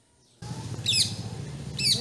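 Two short bird calls about a second apart, each a steep downward-sweeping whistle, over a steady low background hum that starts suddenly after a near-silent moment.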